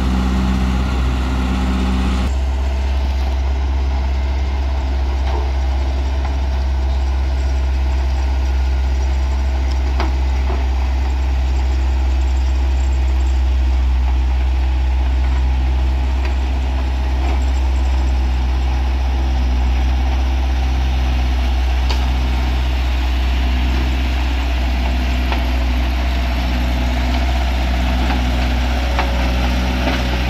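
BOMAG BW 211 D-40 single-drum road roller's diesel engine running steadily with a strong deep hum as the roller drives over a dirt road to compact it.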